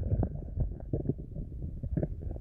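An empty, hungry stomach gurgling and growling close to the microphone: a quick, irregular string of short, low gurgles.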